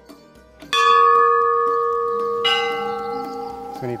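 A temple bell is struck twice: once about three quarters of a second in, and again about two and a half seconds in at a different pitch. Each strike rings on and fades slowly.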